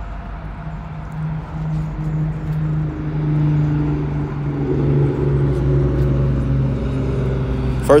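Steady low hum of a motor vehicle, growing louder from about a second in, with a wavering pitch a few seconds in.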